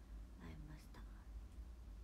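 A woman's voice speaking a few soft, half-whispered words, then quiet room tone with a steady low hum.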